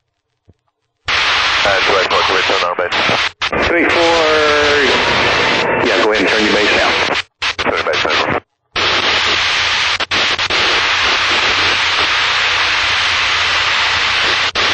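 Aircraft intercom and radio audio: a loud, steady hiss that switches on after about a second and cuts out abruptly a few times, with a brief garbled voice about four seconds in.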